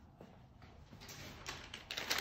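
Quiet room with a few faint soft handling noises, a little louder near the end.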